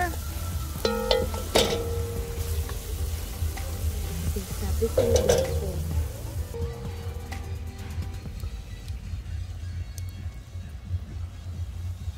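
Curry masala of onions, garlic and peppers frying in oil, sizzling in an aluminium pot while a wooden spoon stirs and scrapes through it, with a few sharp knocks of the spoon. The sizzle is strongest for the first six seconds or so and then fades.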